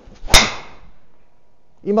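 A golf driver striking a ball off a mat: one sharp, loud crack about a third of a second in, dying away quickly. The ball was struck off the toe of the clubface.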